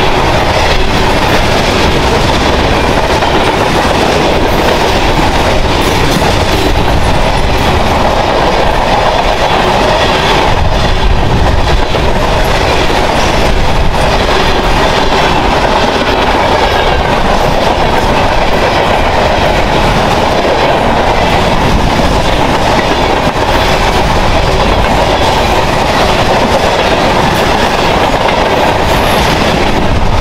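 Freight train cars (covered hoppers, autoracks) rolling past at speed: a steady, loud rumble of steel wheels on rail with clickety-clack over the rail joints.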